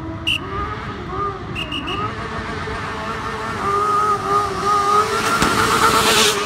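Student formula race car's engine running as the car approaches, its pitch wavering with the throttle and growing louder, with a loud rush of noise near the end as it comes close and passes.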